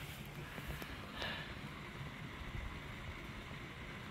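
Quiet outdoor background: a faint, steady low rumble of wind on the microphone under a thin hiss, with one faint brief sound about a second in.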